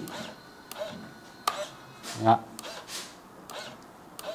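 A few light, separate clicks from the switches of a handheld RC transmitter being handled.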